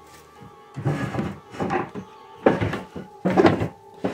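Wooden cabinet drawers being pulled open and pushed about by hand: four short scraping thunks, the third starting with a sharp knock. Steady background music runs underneath.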